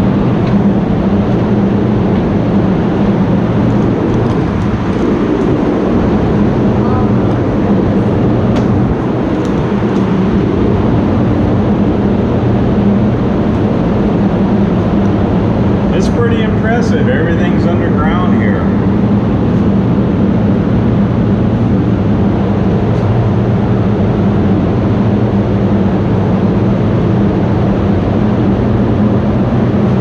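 A steady low mechanical hum made of several held tones, with a person's voice heard briefly about halfway through.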